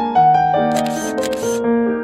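Soft piano music with a camera shutter sound effect: two short shutter clicks in quick succession a little under a second in.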